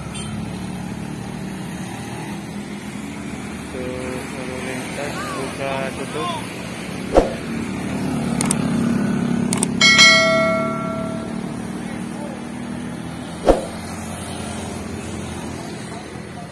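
Hill-climb traffic: a heavy Hino truck's diesel engine working steadily under load, with motorcycles passing close by. A horn sounds for about a second and a half near the middle, and two sharp knocks stand out, one before it and one after.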